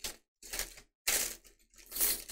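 Foil card-pack wrapper being torn open and crinkled by hand, in about four short bursts with brief pauses between them.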